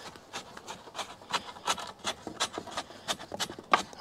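Rake handle jabbed repeatedly into dry concrete mix at the base of a wooden fence post, packing it down: a quick series of short gritty scraping strokes, about three or four a second.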